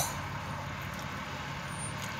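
Steady low hum and hiss of a car's cabin background noise, with no sudden sounds.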